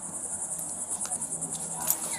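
Insects trilling steadily at a high pitch, with a faint low hum underneath.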